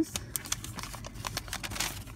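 A long paper store receipt being handled and unrolled, giving a run of small crinkles and clicks.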